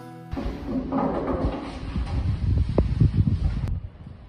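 A song cuts off abruptly just after the start. Then comes uneven, low rumbling ambient noise from the recording, with a few faint blips. A sharp click near the end marks an edit.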